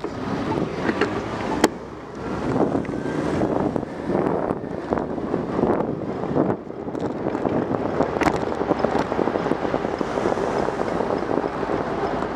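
Wind buffeting the microphone of a camera on a moving bicycle, over steady road and tyre noise that swells and eases, with a couple of sharp clicks.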